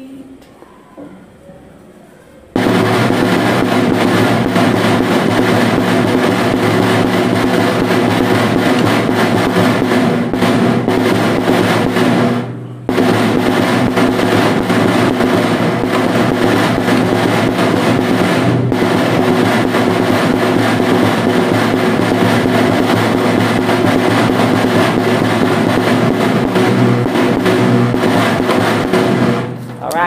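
Snare drum played with sticks in a long, loud run of rapid strokes. It starts about two and a half seconds in and pauses briefly near the middle.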